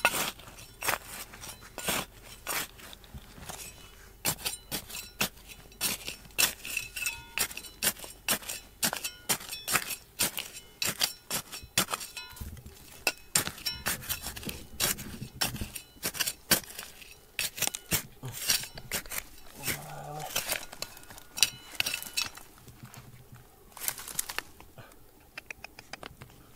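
A small metal hand hoe digging into dry, stony soil: irregular sharp chinks and scrapes as the blade strikes and drags through gravel and small rocks, several a second, easing off near the end.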